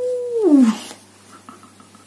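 A woman's drawn-out "ooh", held on one note and then falling in pitch, ending under a second in. After it come faint small ticks and rustles of playing-size cards being handled.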